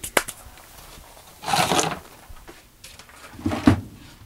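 Stacked plastic buckets and a plastic lid being picked up and handled: a few light clicks at the start, a short scraping rustle about a second and a half in, and a dull knock near the end.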